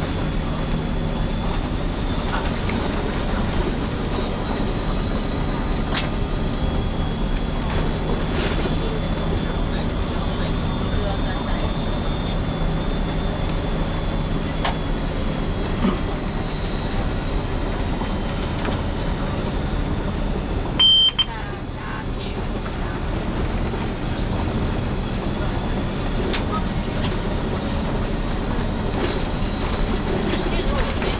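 Intercity coach running through city traffic, heard from inside the cab: a steady engine and road hum. About two-thirds of the way through, a short high electronic beep in two quick pulses stands out as the loudest sound.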